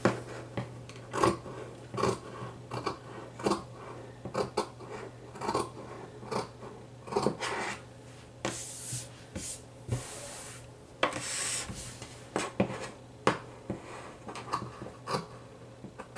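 Scissors snipping stray bits off a rough cut fabric edge to even it up for hemming: short, irregular snips about once or twice a second. About halfway through come two longer rustles as the fabric is handled.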